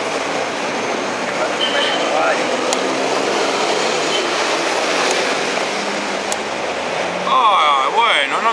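Steady outdoor street noise, with a few sharp clicks of chess pieces set down on a wooden board as moves are made.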